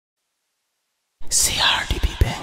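Silence for about a second, then a whispered voice opening the track, with a low thump near the end.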